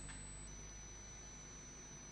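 Quiet room tone: faint hiss and a low steady hum, with a thin, steady high-pitched electronic whine that drops slightly in pitch about half a second in.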